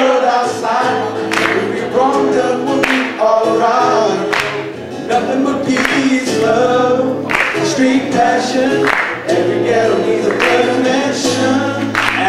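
Two male voices singing together over a strummed acoustic guitar, a rap song performed as a sung acoustic cover.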